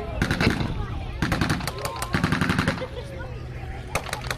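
Blank gunfire from machine guns and rifles in quick, overlapping bursts, dense for the first two and a half seconds and thinning to scattered shots after about three seconds.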